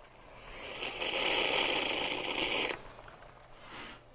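Hot water being sucked up through a drinking straw with a small air hole in its side, drawing air in with the liquid: a hissing slurp that swells over the first second, holds for about two seconds and stops suddenly.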